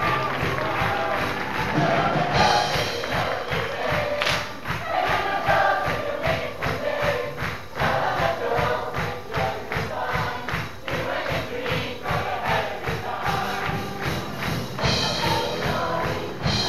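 A large stage-musical chorus singing together over upbeat backing music with a steady driving beat.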